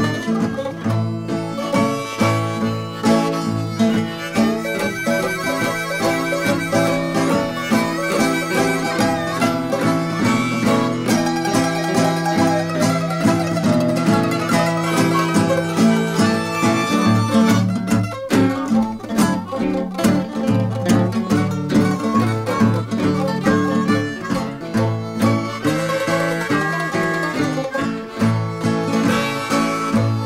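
Acoustic country-blues band playing an instrumental break: guitars with harmonica.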